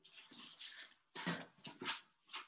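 Rustling and crinkling of a large paper topo map being handled and folded, in several short, uneven bursts.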